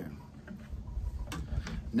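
Faint handling noise from an acoustic guitar being readied to play: a few soft clicks over a low rumble, with the word "go" spoken at the start.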